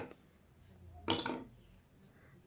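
One brief handling sound about a second in, from hands working a crocheted yarn petal and a metal crochet hook; otherwise a quiet room.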